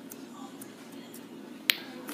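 Blue slime being poked and pressed by fingers, making a few small clicky pops and one sharp, much louder pop near the end.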